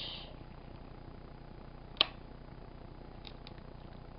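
A MacBook Pro's MagSafe power connector snapping magnetically onto its port: one sharp click about halfway through, over faint room noise.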